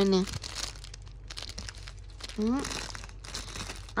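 Thin clear plastic bag crinkling as a banana-shaped squishy toy is turned over in the hand inside it.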